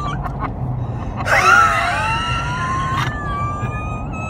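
High-pitched laughter at a joke's punchline: a few short squeaks, then a louder burst about a second in that trails into a long, thin, wheezing whine. The car's steady engine and road hum runs underneath.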